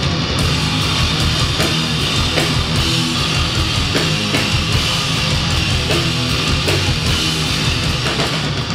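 Heavy metal music played loud: distorted electric guitars over drums, a dense, unbroken wall of sound.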